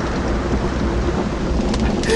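Steady rushing noise with a low rumble beneath it, a sound-effects ambience bed like a storm or roaring fire, with no voice over it.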